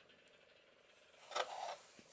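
Near silence, then a brief crackle of a plastic blister pack on its cardboard backing card, flexing as it is turned in the hands, about a second and a half in.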